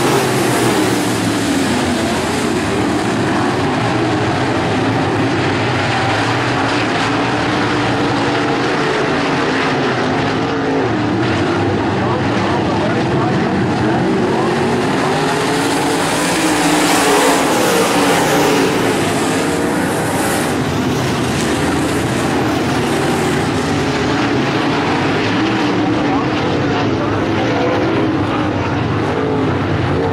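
A field of dirt-track Modified race cars running their V8 engines hard around the oval, the engine notes rising and falling as the cars throttle through the turns and pass by.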